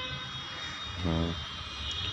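A steady mechanical whine of several high tones held level over a low hum, with a man's brief hum of voice about a second in.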